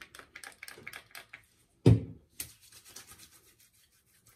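Hands rubbing aftershave balm into freshly shaved skin and stubble. A quick run of small clicks comes first as the product is dispensed, and a single sharp thump about two seconds in is the loudest sound.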